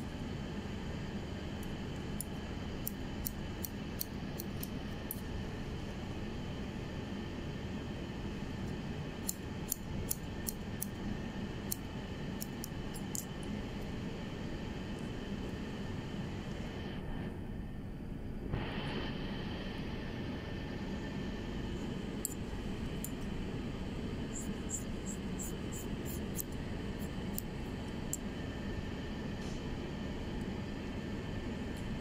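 Hair-cutting scissors snipping through short hair in quick runs of sharp little clicks, with pauses between the runs, over a steady background hiss.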